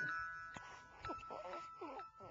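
A newborn baby's faint whimpers, a few short cries in the second half, over soft held chiming music tones.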